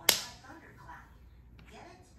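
A single sharp hand clap right at the start, followed by faint low-level sound.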